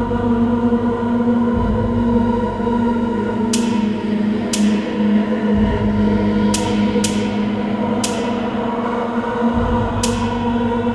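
Live electronic music: a drone of held steady tones over a low rumble that comes and goes, with five sharp, bright clicks that ring away, between about three and a half and eight seconds in.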